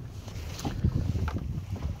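Wind buffeting the microphone over choppy water lapping against a small boat's hull, with a few faint knocks in the middle.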